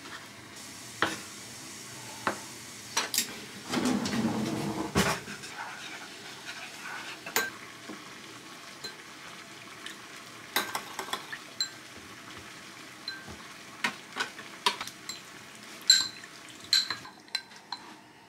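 Kitchen prep sounds: a kitchen knife knocking on a wooden cutting board as raw fish is cubed, then a metal spoon clinking and scraping against a glass bowl as a soy-and-sesame-oil marinade is measured and mixed and the fish stirred in. The sounds are scattered knocks and clinks, most of them in the second half.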